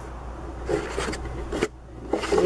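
Handling noise from a camera being picked up and moved by hand: short rubbing and scraping rustles with a few soft bumps, over a steady low hum.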